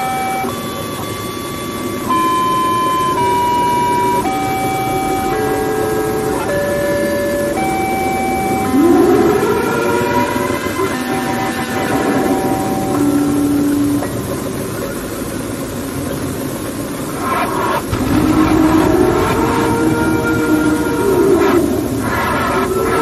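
Loud distorted electronic sound: a tune of steady held tones changing pitch every second or so over a noisy hiss, then siren-like wails that rise and fall, about 9 seconds in and again near the end.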